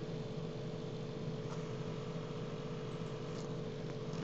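Steady background hum and hiss with a faint constant tone, the recording's room and microphone noise between spoken lines.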